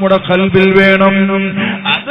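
A man's voice preaching in Malayalam in a drawn-out, chant-like delivery, with a steady low hum underneath.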